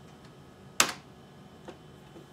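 A sharp click from operating the Macintosh computer's controls (a key or mouse-button press), followed by a much fainter click about a second later.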